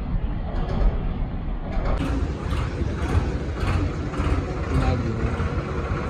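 Modified tractor's diesel engine running steadily, with voices in the background.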